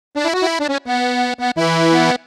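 Funaná instrumental intro led by an accordion: a run of short, quick notes, then held chords broken by brief gaps, with a low bass note coming in near the end.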